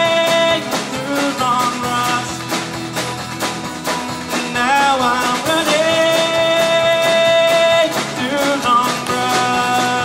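Live acoustic folk-rock band playing: strummed acoustic guitars and a drum kit keep a steady beat under long held sung notes.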